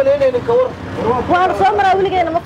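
A person's voice in long, held and gliding tones, repeating the same syllables, over a faint low hum.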